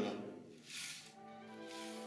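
Two brief swishes of a broom sweeping a floor, about a second apart, while soft music comes in on a single held note.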